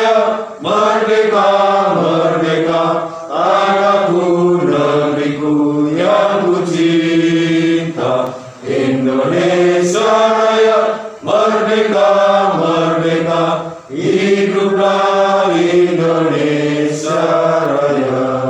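A group of people singing a slow song together in unison, led by a song leader, in held notes and phrases of two to three seconds with short breaths between them.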